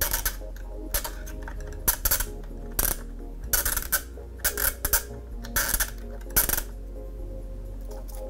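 Irregular plastic clicks and rattles from a paper clip turning the spool of an 8mm video cassette, winding the spliced tape back inside.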